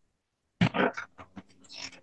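A person's voice making short, unclear sounds, starting sharply about half a second in after dead silence.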